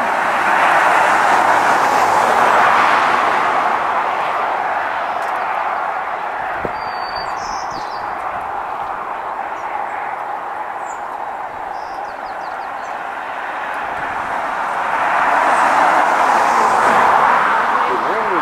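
Road traffic passing: a steady rushing noise that swells near the start, eases in the middle and swells again near the end. A short high bird chirp about seven seconds in.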